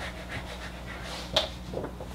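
A man's breathing and faint rubbing as a marker drawing is wiped off a whiteboard by hand, with one sharp breath about a second and a half in. A low steady hum runs underneath.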